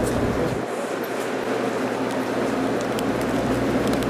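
JR Kyushu 783 series electric train standing at the platform, its onboard equipment giving a steady low hum. The deepest part of the hum drops away for about two seconds soon after the start, then returns.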